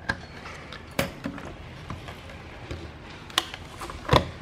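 A few sharp clicks and taps of test gear and parts being handled on a workbench, the clearest about a second in and another near the end, over a faint steady background.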